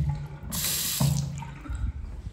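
Single-lever faucet on a wall-hung porcelain bathroom sink turned on briefly: water runs hard into the basin for about half a second, then stops with a brief low hum as the lever shuts.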